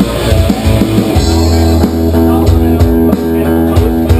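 A live rock band plays an instrumental passage: electric guitars, bass guitar and drum kit, loud and steady.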